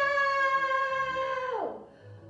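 A woman's voice holding one long high vocal note, then sliding down in pitch and stopping near the end: a playful non-word sound effect. Quiet guitar music plays underneath.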